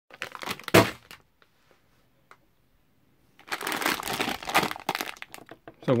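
Plastic sweet bag crinkling as it is handled: a short burst with one sharp crackle in the first second, then a longer stretch of crinkling from about three and a half seconds in.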